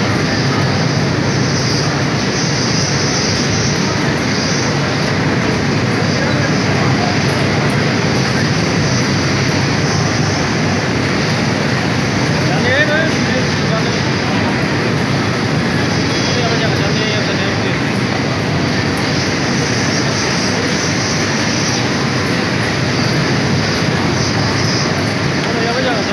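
Steady machine din of a garment pressing floor, with many steam irons and ironing stations running at once and indistinct voices under it. A short squeak comes about halfway through.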